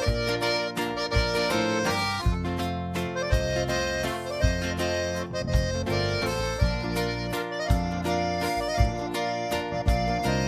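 Instrumental intro of a sertanejo song played live, an accordion carrying the melody over deep bass notes struck about once a second.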